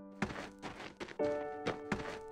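Cartoon running-footstep sound effects: several quick, separate thunks, over light background music that comes in about a second in.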